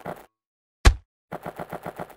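Machine-gun sound effect: a rapid burst of shots, about eight a second, dies away just after the start. A single loud bang comes a little under a second in, and another rapid burst of shots follows about half a second later.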